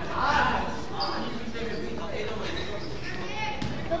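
A basketball bouncing on a gymnasium floor among voices in the hall, with a sharp bounce near the end.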